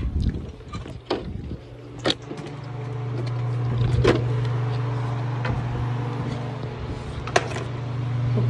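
A storm door's latch and frame clicking and knocking as it is opened, then a steady low machine hum that comes up about two and a half seconds in and holds, with a few more sharp clicks over it.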